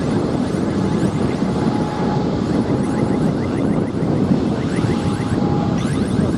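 Airbus A320neo airliner's jet engines running as it rolls along the runway: a steady, loud rumble with a faint thin whine that comes and goes.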